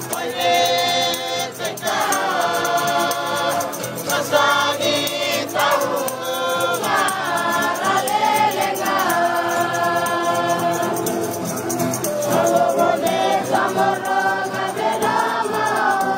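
A large group of voices singing a Christian song in the Lusi language, with long held notes that slide between pitches.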